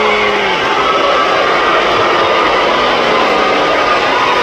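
Large arena crowd, a loud steady din of many voices cheering.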